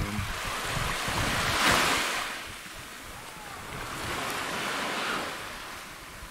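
Small waves washing onto a rocky, pebbly shore, swelling loudest about two seconds in and again more softly near the end, with wind rumbling on the microphone.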